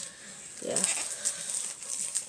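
Light clicks and crinkles of a boxed airsoft pistol's plastic packaging being handled and turned over.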